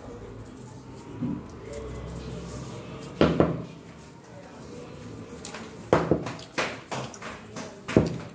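A metal fork clinking and scraping against a steel plate while eating noodles. There is one sharp clink about three seconds in and several more in the last few seconds.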